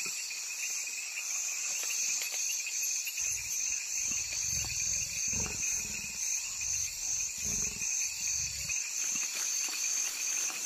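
Leopard growling in a series of low rumbles from about three seconds in, over a steady, pulsing chorus of night insects.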